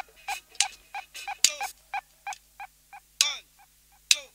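Dub echo effect on a reggae dubplate with no beat running: a short tone repeats about three times a second and dies away, crossed by two falling synth zaps.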